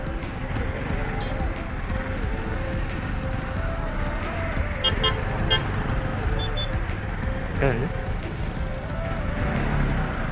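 Bajaj Pulsar NS200 motorcycle riding through traffic: steady engine and road rumble, with a few short horn toots about halfway through.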